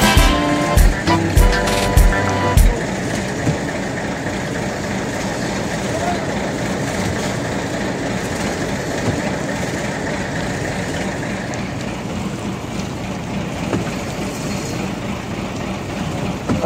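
Background music with a beat, cutting off about two and a half seconds in. It is followed by a steady running noise from the fishing boat's engine.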